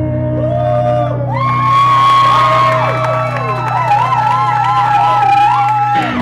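A live rock band holds a low bass note while an electric guitar plays a lead of sustained, bent notes with a wide vibrato. The band cuts off sharply at the very end.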